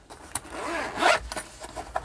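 Zip on an inner pocket of a Veto Pro Pac tool backpack being pulled open in short runs, the longest about a second in.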